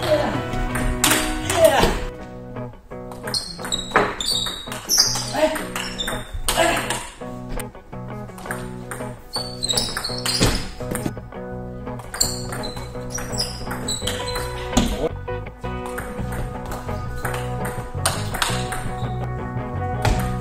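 Background music running throughout, with the light hollow clicks of a table tennis ball striking rackets and the table during rallies, coming at irregular intervals.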